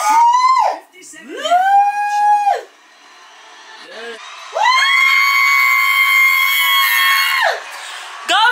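Excited high-pitched screams: a short one at the start, another about a second and a half in, then one long held scream from about four and a half to seven and a half seconds.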